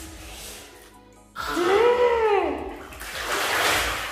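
Water splashing in a filled bathtub as a child gets into it, loudest near the end. It follows a single rising-then-falling pitched sound in the middle.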